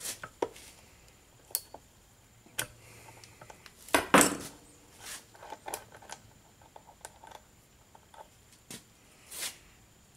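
A ratchet wrench and a steel fitting being handled on a Roosa Master rotary diesel injection pump: the wrench comes off and the just-loosened fitting is unscrewed by hand, giving scattered metal clicks and clinks, the loudest about four seconds in.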